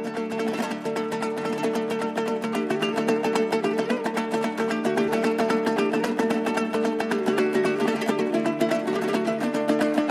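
Kazakh dombras, two-stringed long-necked lutes, strummed rapidly in a fast, even rhythm in an instrumental passage between sung verses, with steady ringing notes.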